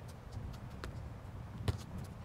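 A soccer ball struck by a foot during a tethered-ball passing drill: a light tap a little before the middle, then one sharper thud near the end, over faint outdoor background.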